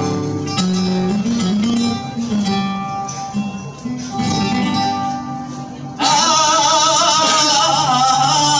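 Flamenco guitar playing a malagueña. About six seconds in, a woman's voice comes in loudly over it with a long, wavering, ornamented sung line.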